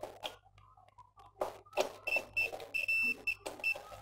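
A digital multimeter's continuity beeper sounds in short, broken high beeps starting about two seconds in, over the clicks and scrapes of test probes against the generator's AC socket contacts. The beeps break up because the probe cannot seat well in the socket, though the circuit is continuous.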